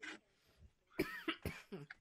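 A faint cough from a person, with a few brief throat sounds, about a second in.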